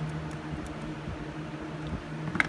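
Steady low background hum with faint room noise, like a fan or air conditioner running; the nitro engine itself is not running.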